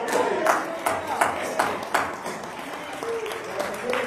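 A run of sharp hand claps, about two or three a second, strongest over the first two seconds, with a few more near the end, over faint voices of people reacting.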